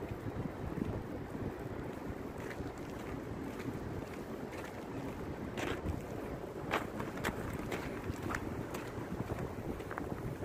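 Wind buffeting a handheld camera's microphone: a steady low rumble, with a few scattered sharp clicks in the second half.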